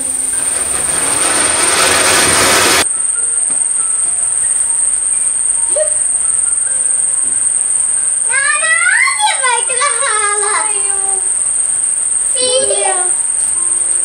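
A ground fountain firework hissing loudly as it sprays sparks, then cutting off suddenly about three seconds in. Crickets chirp steadily throughout, and voices call out near the middle and near the end.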